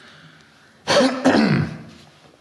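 A man clearing his throat in two quick bursts about a second in.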